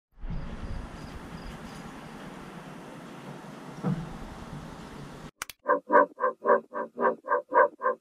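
Steady outdoor hiss with low rumble from a roof-mounted action camera, and a brief thump about four seconds in. After a sudden cut and two quick clicks, a pitched tone pulses rhythmically about four times a second.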